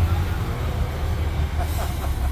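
Low, steady rumble of pickup trucks driving slowly along a cobblestone street, with faint voices near the end.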